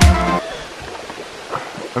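Electronic music with a heavy beat every half second cuts off about half a second in, giving way to the steady rush of water from a creek and waterfall, with a brief laugh near the end.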